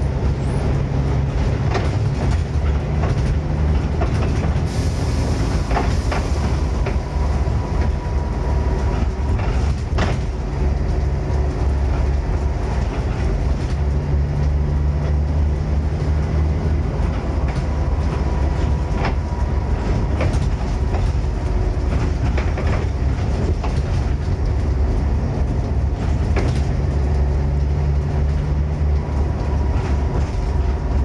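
Volvo B7TL double-decker bus heard from inside the saloon on the move, its six-cylinder diesel working hard with the engine note rising and falling, and the body and fittings rattling and knocking throughout. A short hiss comes about five seconds in.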